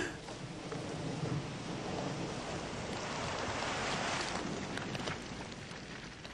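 A steady, rain-like hiss of noise that swells a little about three to four seconds in, with a few faint clicks near the end.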